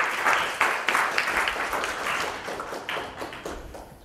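Audience applauding, starting all at once and slowly thinning out toward the end.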